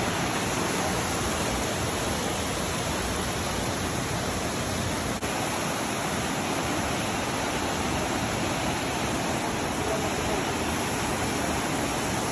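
Mountain stream rushing over boulders in shallow rapids: a steady, full roar of running water, with a momentary dip about five seconds in.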